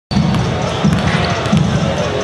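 Basketballs bouncing on a hardwood gym floor during warmups, with crowd voices and a regular low thump repeating a bit faster than once a second.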